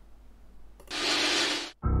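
An intro sound effect: a loud burst of hiss that starts and cuts off sharply, just under a second long, about a second in. Bass-heavy music starts just before the end.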